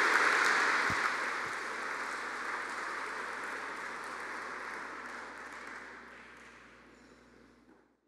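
Audience applauding after a speech, the clapping fading away steadily until it is gone near the end.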